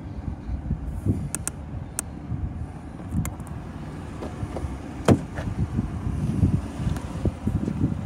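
Ford Crown Victoria Police Interceptor's 4.6-litre V8 idling steadily, with footsteps on the asphalt beside it. A few light clicks, then a sharp click about five seconds in as the driver's door is unlatched and opened.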